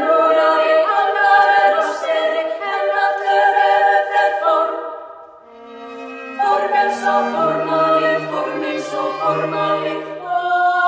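Women's choir singing sustained chords in contemporary classical style. The chords fade out about five seconds in, a single low held note follows, and the full choir comes back in about a second later.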